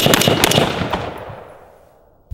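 AR-15 carbine firing a rapid string of shots in about the first half second. The echo then dies away over the next second and a half.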